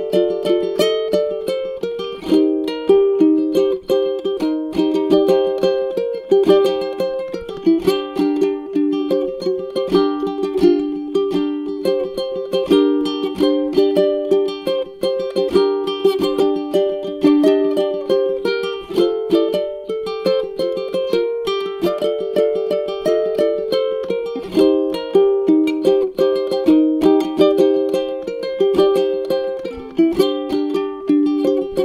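Solo ukulele played with the fingers: a continuous, steady run of plucked notes and chords in an instrumental melody.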